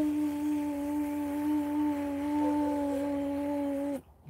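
A man humming one long, steady note, a vocal imitation of motorised grow-light movers gliding along their rails.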